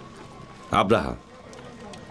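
A man's voice speaks one brief word of dubbed dialogue about three-quarters of a second in. Otherwise there is only a faint, even background.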